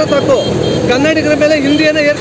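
A man speaking in Kannada in a raised voice.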